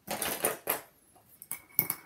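Eighth-inch double-sided adhesive tape being pulled from its roll in two short rasping pulls, followed a second later by a few sharp clicks.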